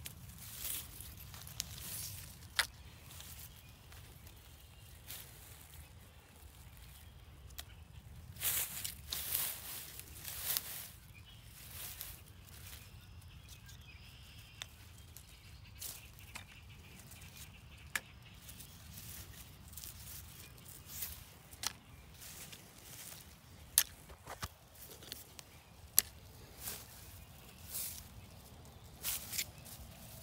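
Grass and plastic litter rustling and crackling as a hand pushes through them close to the microphone, with scattered sharp clicks and a busier stretch of rustling near the middle.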